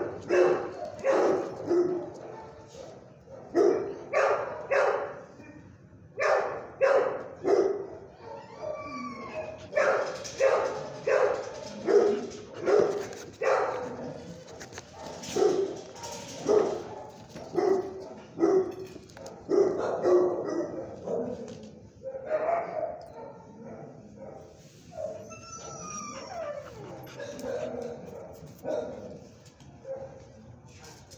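Dog barking repeatedly, in runs of barks about two a second with short pauses between runs.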